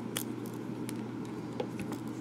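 A few faint, scattered clicks and taps of ballpoint pens being handled by hand over paper, over a low steady background hum.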